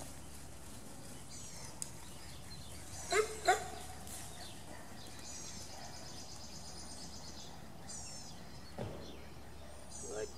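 A dog barks twice in quick succession about three seconds in, over faint birdsong and a steady outdoor background.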